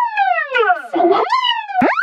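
Children's song vocal run through a pitch-bending effect, its pitch sliding down and back up twice like a siren, with a steep swoop upward near the end.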